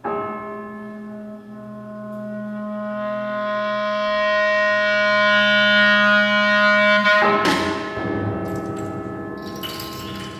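Contemporary chamber music for B-flat clarinet, cello and prepared piano: a struck piano sound opens, then a long held clarinet tone over a low sustained cello note swells steadily louder. About seven seconds in a loud, harsh attack cuts in, and the sound then fades with a few sharp clicks near the end.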